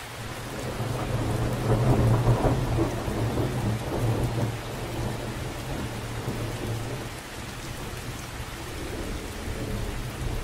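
Steady rain falling, with a rolling peal of thunder that swells over the first two seconds and dies away over the next five.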